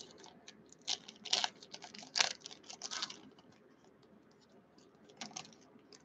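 Foil trading-card pack wrapper crinkling and tearing as it is opened by hand, in a few short crackly bursts over the first three seconds and once more near the end.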